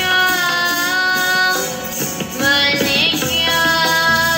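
Young voices singing Sikh kirtan, a devotional hymn, over instrumental accompaniment: long held notes with a wavering ornamented turn about three seconds in.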